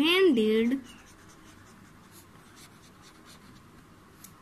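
A pencil writing on lined notebook paper: faint, short, irregular scratching strokes as words are written out.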